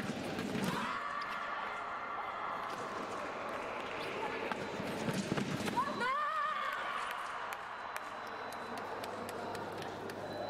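Women's sabre bout: quick footwork stamping on the piste and sharp clicks as the two fencers attack each other. Loud shouting goes over it, with one long wavering yell about six seconds in.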